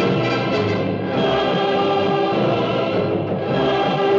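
Orchestral music with a choir singing long held chords, which change about a second in and again near the end.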